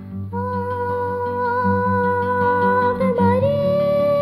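Song music: a long held melody note in a wordless, humming-like vocal line over plucked acoustic guitar accompaniment, stepping up to a higher note about three seconds in.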